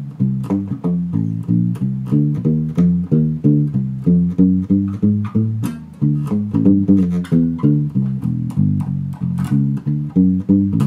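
Six-string Warwick Streamer LX electric bass played with thumb muting and index-finger plucks, walking a 12-bar blues line in even notes about three a second. Each note is cut short, giving a round, thuddy, upright-like tone with little sustain.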